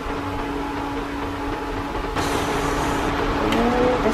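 A steady low mechanical hum, joined about two seconds in by a rustling hiss as chopped cabbage is tipped from a plastic colander into a pot of soup and pushed down with a ladle.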